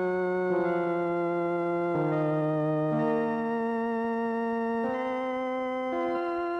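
Recorded meditative organ music: slow, sustained chords held steady and changing every second or two.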